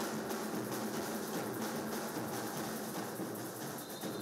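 A group of snare drums and bass drums played together, beating a quick, even rhythm.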